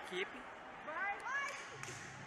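Students' voices calling out and talking in a school gymnasium, with short rising shouts about a second in and a single knock near the end.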